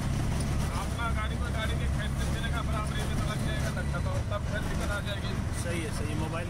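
Auto-rickshaw engine running steadily under way, a continuous low drone heard from inside the open cab, with road and traffic noise around it.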